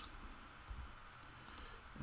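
A few faint, sharp clicks from a computer mouse and keyboard while a value is typed into a software dialog and confirmed.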